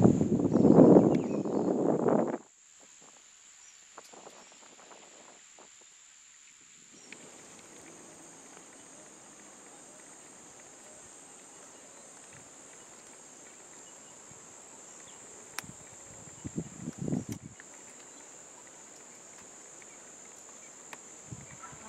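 Insects chirring steadily at a high pitch in a quiet rural background. A loud rough rustling noise fills the first two seconds or so and cuts off suddenly, and a shorter rustle comes about three-quarters of the way through.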